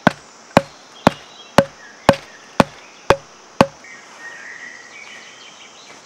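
Tarp stake being hammered into the forest floor: eight sharp, even blows about two a second, stopping about three and a half seconds in.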